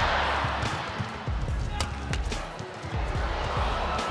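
Racquets striking a shuttlecock in a fast men's doubles badminton rally: a series of sharp hits, bunched together a little under two seconds in, over steady arena crowd noise.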